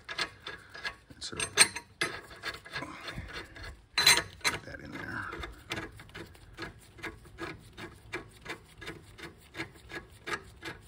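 Steel lug nuts spun by hand down wheel studs: the threads tick and rub in a quick, even rhythm of about five ticks a second, with a couple of louder clinks in the first half.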